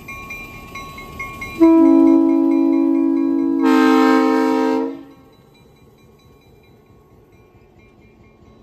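Diesel locomotive's air horn sounded in one long blast of about three seconds, getting louder and fuller near its end before cutting off, over a bell ringing at about four strokes a second. After the horn stops, only the lower rumble of the passing train remains.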